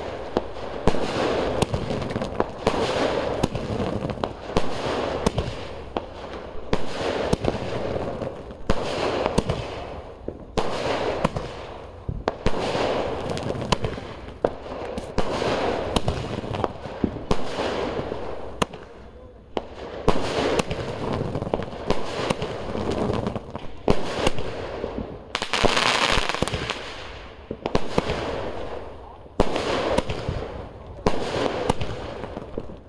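Sky shot aerial fireworks firing: a long run of sharp bangs and crackles at uneven intervals as shells launch and burst overhead.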